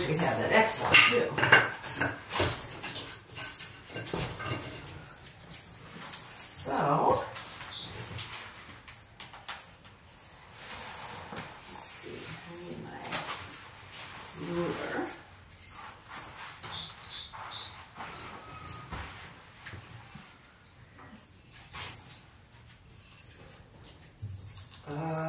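Small aviary finches calling with short high chirps, over the knocks and clatter of a wooden, wire-meshed frame being handled. A few short voice-like sounds come near the start and about seven seconds in.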